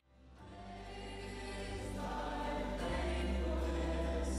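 Choral music fading in from silence, with sustained voices and a deep bass that swells about three seconds in.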